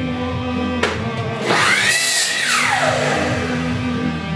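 Miter saw motor starts about a second in, whines up in pitch, runs, then winds down with a falling whine by about three seconds. Rock music with guitar plays underneath throughout.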